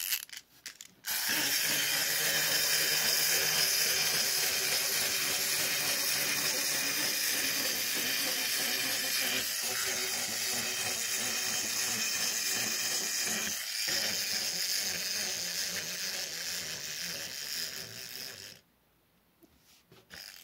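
Small plastic wind-up walking toy: the key clicks as it is wound in the first second, then the spring-driven clockwork runs steadily for about seventeen seconds as the toy walks. It fades slightly as the spring runs down and stops abruptly about a second and a half before the end.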